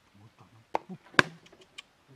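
A homemade bird trap being sprung: its cardboard flap slaps shut against the wire motorbike basket with one sharp snap about a second in, just after a lighter click, then a few small ticks.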